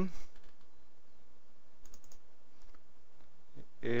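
A few faint computer mouse clicks, a close pair about two seconds in, over a steady low background hiss.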